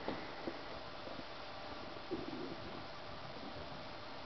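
A Bengal cat's brief, soft coo-like trill about two seconds in, over faint room hiss, with a couple of light taps near the start.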